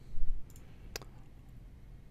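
Two sharp computer mouse clicks about half a second apart, opening a drop-down menu, with a soft low bump just before them.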